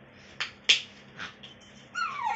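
Two sharp plastic clicks about a third of a second apart, the second louder, then a softer one just after a second in: the flip-top cap of a plastic bottle being snapped open.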